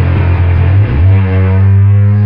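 Distorted electric guitar and drums playing loud rock, then a low final chord struck about a second in and held ringing out.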